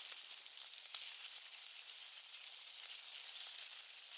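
Faint steady hiss with scattered soft crackles and ticks, one tick a little clearer about a second in.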